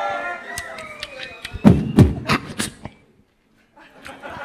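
Beatboxing into a handheld microphone: a gliding vocal tone gives way to hard kick-drum booms and sharper snare and hi-hat clicks. The sound breaks off for most of a second near the end.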